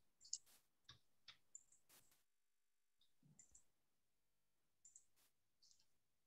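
Near silence with a few faint, short clicks, scattered through the first two seconds and one more about five seconds in.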